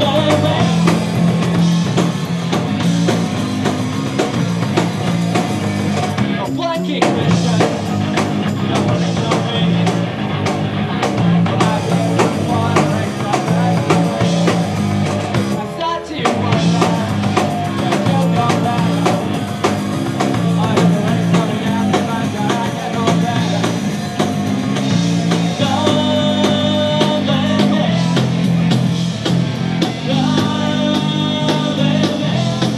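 Live punk rock band playing: distorted electric guitar, bass guitar and drum kit with a sung lead vocal. The sound dips briefly twice, about seven and sixteen seconds in.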